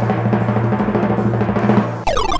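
Drum roll sound effect with a low bass-drum hum under rapid snare strokes, playing as a suspense cue while a random winner is drawn; it stops abruptly near the end.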